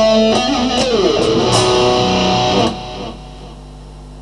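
Electric guitar playing a lead line, single notes bent and wavering in pitch; the playing breaks off about two and a half seconds in.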